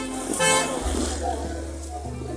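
Background music with low sustained notes over busy street noise and voices, with a brief loud burst about half a second in.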